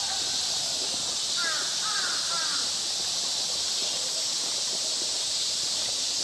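A crow cawing a few harsh times in quick succession, about a second and a half in, over a steady high hiss.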